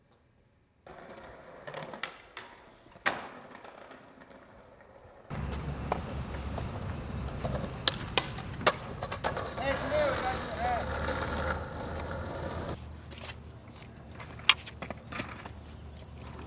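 Skateboard sounds: wheels rolling on concrete, sharp clacks of tail pops and landings, and a board grinding along a metal handrail. It starts about a second in and gets louder about five seconds in.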